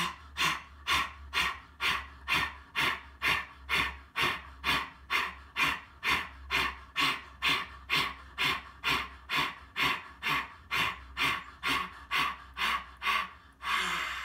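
A man breathing out hard and fast through his wide-open mouth, about two and a half short huffs a second in an even rhythm, some thirty in a row, as a yogic breathing exercise.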